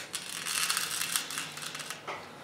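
Salt poured from a small glass jar into an empty tuna tin, the grains pattering onto the metal in a fine, continuous rattle for nearly two seconds, after a light click at the start.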